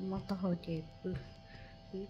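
A woman's voice speaking briefly in the first second, then a pause, over a faint steady two-note hum.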